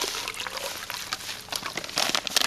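Washing soda powder pouring from a plastic bag into a tub of water: a steady hiss of powder hitting the water, with a few crinkles from the bag near the end.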